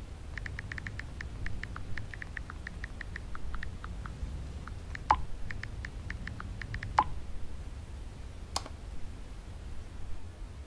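Smartphone touchscreen keyboard clicks as a message is typed: quick runs of short ticks, several a second, broken by a few sharper clicks, over a low steady room hum.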